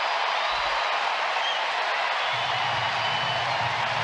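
Ballpark crowd cheering a diving catch, a steady wash of crowd noise heard through the TV broadcast.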